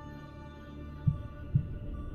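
Heartbeat: two low, dull thumps half a second apart, a lub-dub beginning about a second in, over a sustained musical drone.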